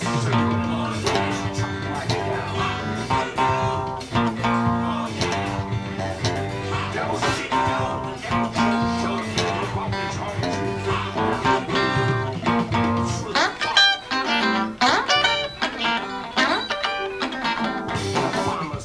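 Les Paul-style electric guitar playing a choppy rock-blues riff over a full band with bass and drums. Partway through, the low end drops away and the guitar plays sharper, higher stabs.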